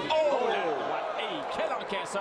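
Boxing gloves landing punches in a heavyweight exchange: several short sharp smacks, with raised voices calling out underneath.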